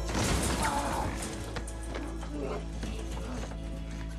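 Movie fight-scene soundtrack: a background score with a quick run of clattering hits in the first second or so, settling into a low, steady musical drone.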